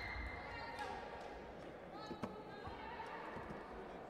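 Taekwondo bout in a reverberant sports hall: voices calling out across the hall, a brief high-pitched tone near the start, and a single sharp smack about two seconds in.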